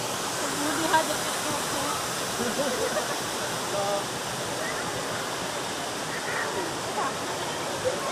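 Steady rush of falling and flowing water from a waterfall and its shallow stream, with a few faint voices calling in the background.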